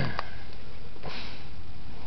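A man coughs once, briefly, right at the start, then gives a short sniff about a second in.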